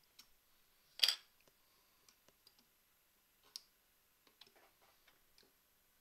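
Clicks and light knocks of a printed circuit board being pulled off and fitted into the holder of a current balance: a sharp click about a second in, another near the middle, and scattered small ticks.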